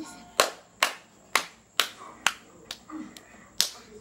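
A steady beat of sharp hand snaps, about two a second, keeping time between sung lines; two of the eight are fainter.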